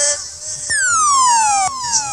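Electronic siren sound effect of the kind a dancehall sound system fires between tunes: a string of falling, zapping pitch sweeps starting under a second in, overlapping one another, the first cutting off abruptly.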